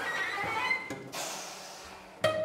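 Contemporary chamber music for flute, saxophone, cello and piano: a short, wavering high tone that bends up and down in pitch. Over the second half it gives way to a soft, airy hiss that fades away.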